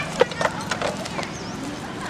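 Baby macaque giving short, high squeaks as an adult pulls it off a motorbike wheel's spokes. Several sharp clicks and knocks come in the first second or so.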